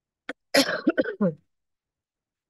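A woman coughing: a faint tick, then a quick run of three or four coughs about half a second in, over in under a second.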